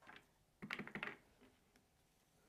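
Light clicks and taps from craft supplies being handled on a work mat, in a quick cluster of several clicks just over half a second in.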